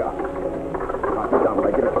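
Violin playing a short phrase that breaks into a quick run of notes moving up and down in pitch.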